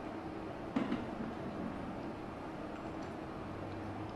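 A glass kettle is set down on its heating stand with a single clink a little under a second in, over a low steady room hum.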